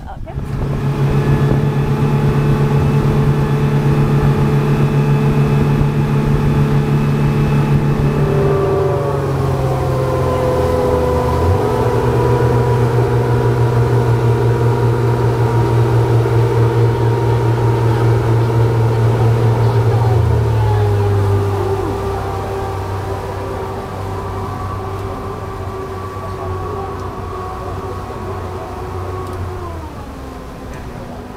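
A passenger speedboat's engines running hard under way, a steady loud drone whose pitch shifts about eight to twelve seconds in. About twenty seconds in the engines throttle back and the drone drops lower and quieter as the boat slows.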